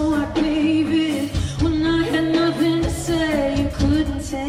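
Live pop-rock performance: a female lead singer singing into a microphone over a full band, heard from the crowd.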